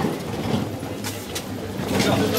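Hand cart wheels rolling and rattling over street paving, with a steady low hum and a few sharp clicks about a second in.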